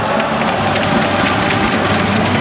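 Loud, dense background noise full of rapid crackling, over a steady low hum.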